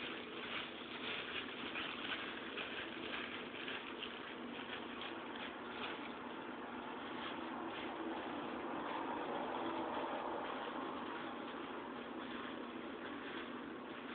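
Clear plastic glove crinkling and rubbing against hair as bleach is worked in, irregular rustles over a steady hiss.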